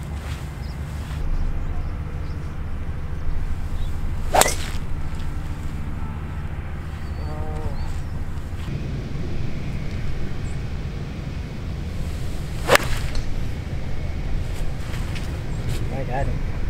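Two golf shots: a driver striking the ball off the tee about four seconds in, then an iron shot from the fairway a few seconds before the end, each a single sharp crack. A steady low rumble of wind on the microphone runs underneath.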